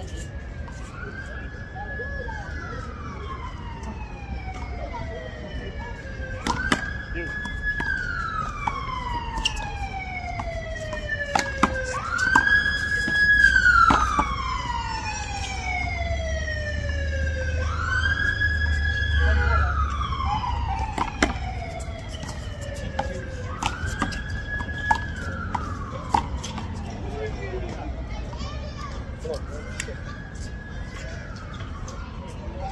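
Emergency vehicle siren wailing in slow cycles, about six in all, each rising quickly, holding high, then gliding down over a few seconds. It is loudest about halfway through. A few sharp knocks sound over it.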